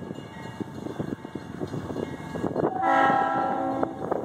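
Leslie air horn on CN 2187, a GE C40-8W locomotive leading a freight train, sounding one loud chord blast of several notes about three seconds in, held for about a second.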